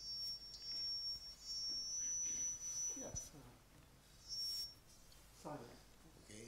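A thin, steady high-pitched whistling tone for about three seconds, returning briefly about four and a half seconds in, over faint murmuring in a quiet auditorium.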